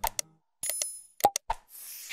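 Subscribe-button animation sound effects: a string of short mouse clicks, a bright bell-like ding a little over half a second in, and a whoosh starting near the end.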